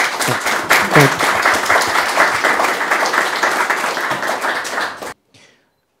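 Audience applauding, a dense run of many hands clapping that cuts off suddenly about five seconds in.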